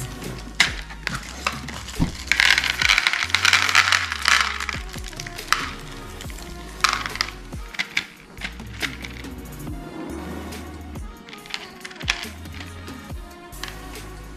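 Background music with a repeating bass line, over small plastic beads clicking and rattling as they are tipped out into a plastic tray and handled. The rattling is thickest a couple of seconds in, with another short burst about seven seconds in.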